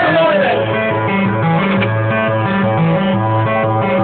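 Band music: guitar playing over a repeating bass line that steps between a few low notes.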